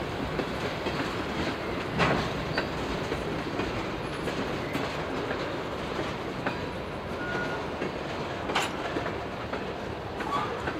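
Freight train tank cars rolling slowly past: a steady rumble of steel wheels on the rails with scattered sharp clacks and bangs, the loudest about two seconds in and another near the end.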